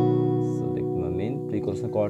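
Capoed acoustic guitar chord ringing out and slowly fading after a strum. About halfway through, a man's voice starts speaking over it.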